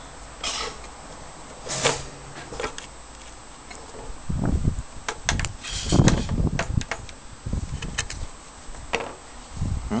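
Clicks, knocks and handling noise as the sawn-off top section of a transformer's laminated steel core is lifted off and handled over a wooden workbench, with a cluster of louder low thumps around the middle.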